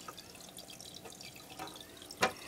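Faint trickle and drip of water in a home fish tank, as from its running filter.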